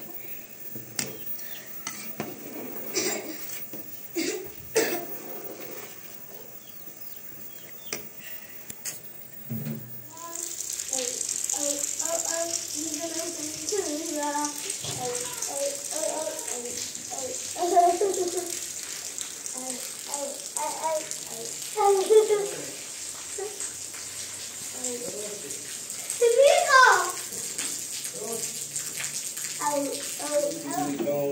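A metal ladle knocking and clinking in an aluminium pot of rice. About ten seconds in, a steady hiss of water sets in, with children talking over it.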